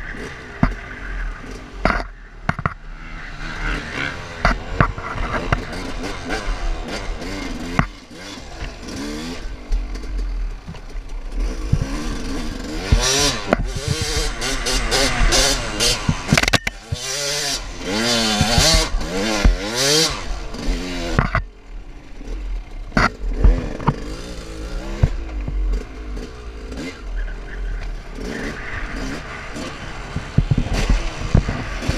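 Dirt bike engine revving up and down, its pitch rising and falling again and again with throttle and gear changes. Wind rushing over the microphone and scattered knocks from the ride on the camera.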